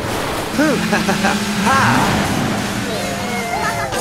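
Cartoon sound effect of a small boat speeding past, a loud rushing whoosh of water and motor, with a few short voice exclamations over it.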